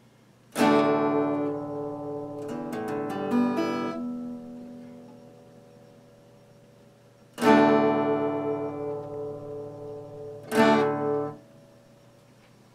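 Acoustic guitar: three slow strummed chords, each left to ring out, with a few single notes picked after the first. The last chord near the end is stopped short.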